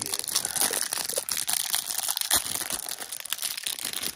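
Clear plastic wrapping of a trading-card hanger pack crinkling and tearing as it is pulled open by hand, a continuous run of sharp crackles.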